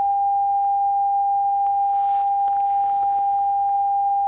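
A single loudspeaker driven by a signal generator plays a steady, mid-pitched pure sine tone at a constant level. A few faint clicks sound over it.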